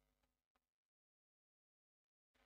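Near silence: a very faint trace of noise in the first second, then complete silence.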